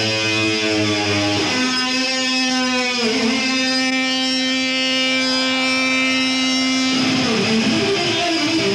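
Electric guitar in a live rock concert: held notes with one bending down about a second and a half in and a quick dip around three seconds, then one long sustained note, giving way to faster notes near the end.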